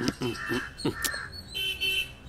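Crow cawing, a few short caws about half a second apart.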